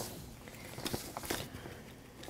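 A few faint, short scratchy strokes of a paintbrush on a stretched canvas as red paint is worked in, against quiet room tone.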